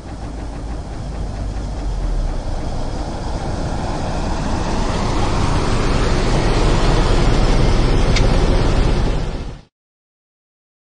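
A vehicle engine running and growing steadily louder, then cutting off abruptly near the end.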